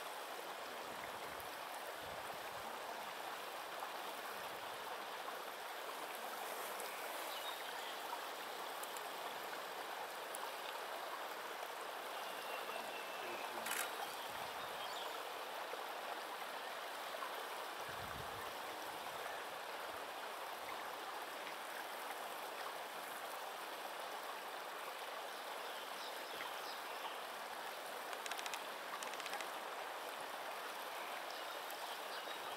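Steady rushing of flowing water, even throughout, with one brief click about halfway through.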